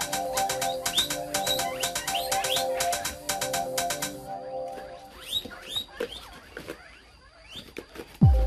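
Background music with a steady beat that cuts off about halfway through. Guinea pigs squeak in short rising squeals throughout, and the squeals carry on after the music stops.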